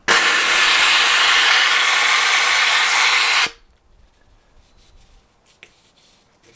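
McCulloch steam cleaner blowing steam through a microfiber towel wrapped over its nozzle, a loud steady hiss that starts abruptly and cuts off after about three and a half seconds.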